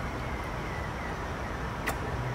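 Steady low outdoor background rumble, like distant traffic, with a single sharp click just before the end.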